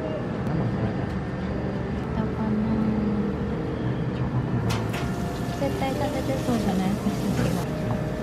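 Steady low hum of indoor background noise with indistinct voices murmuring under it; a short click or clatter a little past halfway.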